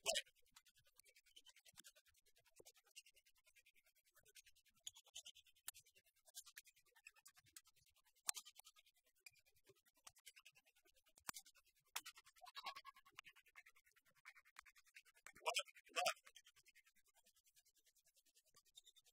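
Faint badminton rally: sharp racket strikes on the shuttlecock a second or a few seconds apart, with shoe squeaks on the court floor. Two louder short sounds come close together near the end, as the point is won.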